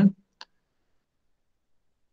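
A single short click, a computer mouse click advancing the slide animation, followed by dead silence.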